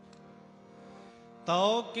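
A harmonium chord held quietly, then about one and a half seconds in male kirtan singing comes in loudly over the harmonium.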